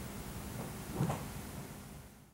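Quiet room tone with a steady low hum, and one brief faint sound about a second in.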